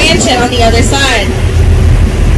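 Steady low rumble of a tour boat's engine heard from the open deck, with a person's voice talking briefly over it in the first second or so.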